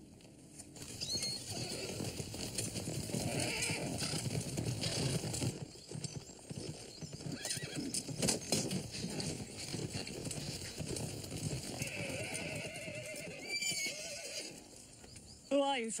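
Horses on the move, hooves clattering on dirt, with neighing now and then.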